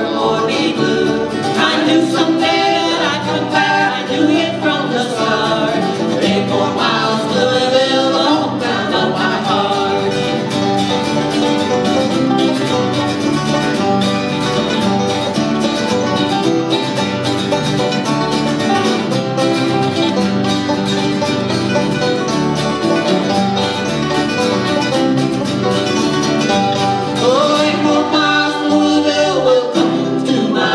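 Acoustic bluegrass band playing live: five-string banjo, fiddles and acoustic guitars at a steady, driving tempo, with several sliding notes standing out above the picking.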